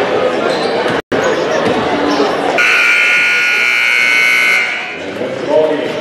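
Gymnasium scoreboard horn sounding one steady blast of about two seconds, starting a little after halfway, as the game clock runs out. Crowd voices and court noise run around it.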